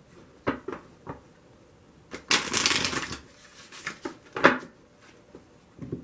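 Tarot cards being handled: a few light taps, then a burst of shuffling about two seconds in that lasts about a second, followed by a few sharper card clicks and taps.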